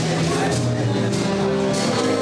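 Live small-group jazz: a saxophone playing held and moving notes over upright double bass and a drum kit with regular cymbal strokes.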